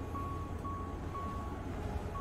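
A steady low hum with a short high beep repeating about twice a second.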